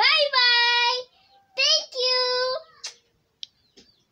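A young girl's voice singing two long held notes at the same pitch, each about a second long, with a short gap between them. A couple of small clicks follow near the end.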